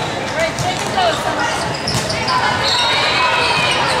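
Reverberant sports-hall din of a volleyball game: sharp smacks and bounces of volleyballs, the clearest about two seconds in, over a constant hubbub of players' and spectators' voices.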